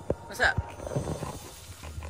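A brief voice sound and a few low knocks from a handheld phone being moved.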